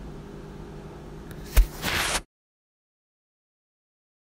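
Faint steady low hum of background room tone, broken about a second and a half in by a sharp knock and a brief rush of noise, then dead silence for the second half.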